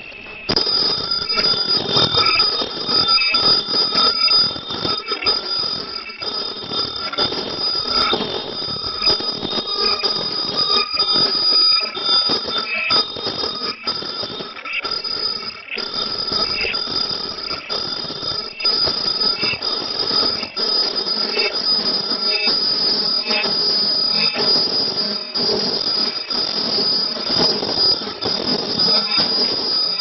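WD-700B automatic D-cut nonwoven bag making machine running: a steady high whine over a fast, regular mechanical clacking as it feeds, seals and punches bags cycle after cycle.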